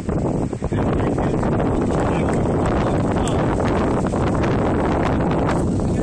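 Wind buffeting the phone's microphone: a steady, loud low rumble that covers most other sound.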